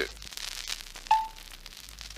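One short, clear beep about a second in, over faint hiss and crackle: a filmstrip advance tone, the signal to move the projector on to the next frame.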